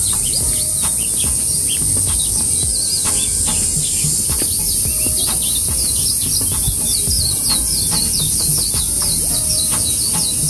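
Birds chirping in many quick, short calls, growing denser in the second half, over a steady high-pitched insect hiss.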